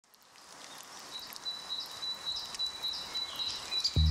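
Outdoor nature ambience fading in: a steady high insect trill with regularly repeating chirps over a faint hiss.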